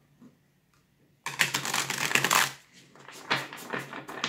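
A tarot deck being riffle-shuffled: a rapid flutter of cards for about a second, starting just over a second in, then a shorter clatter of cards near the end.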